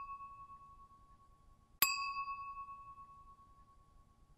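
A bell-like ding sound effect, added in editing. The ringing tail of one strike fades at the start, then a second clear ding comes about two seconds in and rings away slowly.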